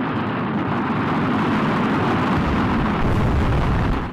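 Rocket launch roar from the clip's soundtrack: a steady, rumbling noise that cuts off suddenly at the end.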